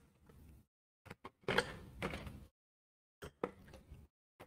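Quiet handling of painting tools at the palette: a few light clicks, a rustling scrape of about a second, then a few more small clicks.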